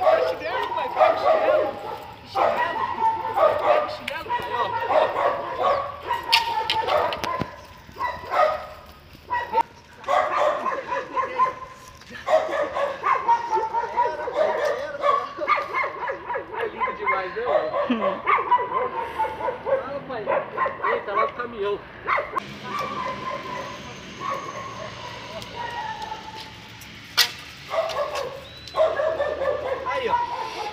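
A young pit bull yipping and whining excitedly in play, a near-continuous string of pitched cries that waver up and down, with a few sharp knocks in between.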